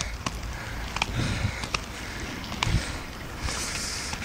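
Steady rumble of wheels rolling over pavement while riding, mixed with wind on the microphone, with a few sharp clicks and knocks at irregular moments.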